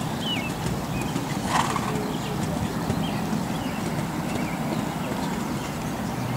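A horse cantering on sand arena footing, its hoofbeats soft and muffled over a steady outdoor background, with a short louder sound about a second and a half in.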